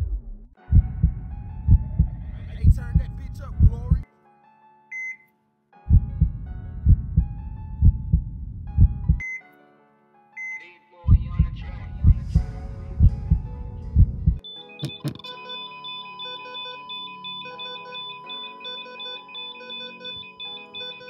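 Music intro built on heart-monitor sound effects: deep heartbeat thumps about twice a second come in three stretches, and short monitor beeps fall in the gaps. About fifteen seconds in, the thumps stop, and a steady flatline tone holds under a repeating high synth melody.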